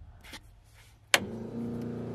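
A click about a second in, then a starter motor cranking the carbureted engine steadily without it catching.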